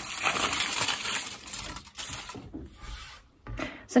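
Aluminium kitchen foil crinkling and rustling as it is torn into strips and handled by hand, in an uneven run of crackles with short pauses.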